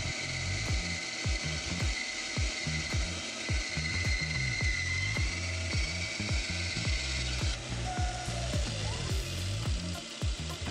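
Small benchtop bandsaw running and cutting through a thick laminated plywood blank, with a steady high whine that drops away about seven and a half seconds in.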